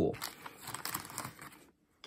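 Thin plastic bag crinkling as a hand rummages through it for a small wooden game piece, an irregular crackle that stops near the end.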